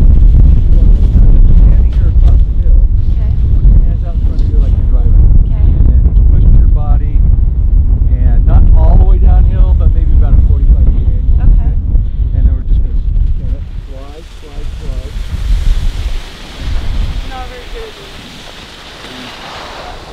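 Wind buffeting the microphone: a loud, dense low rumble with faint voices in the middle. About two-thirds of the way through the rumble drops away and a quieter, steady hiss takes over.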